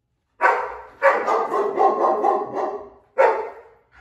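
German Shepherd barking at someone at the front door: one bark, then a quick run of barks, then one more near the end.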